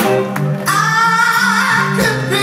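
Live band music: a male singer holds one long sung note with vibrato over sustained organ and bass, with a drum hit shortly before the note begins.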